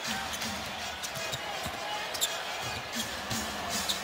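Arena background during live basketball play: low, steady crowd noise with a basketball bouncing on the hardwood court in scattered, irregular thuds.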